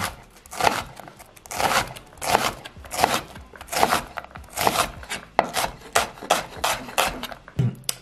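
Chef's knife dicing an onion on a wooden cutting board: a steady run of crunchy cuts and knocks on the board, about one stroke every three-quarters of a second.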